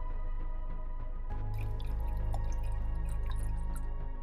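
Background music with steady low tones, and over it lager poured from a can into a glass, with a couple of seconds of dripping, crackling fizz starting about a second in.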